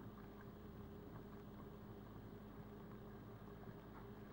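Near silence: a faint steady hum with light hiss.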